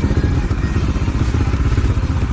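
Motorcycle engine running at low speed with a steady low rumble, heard close up from a camera mounted on the bike.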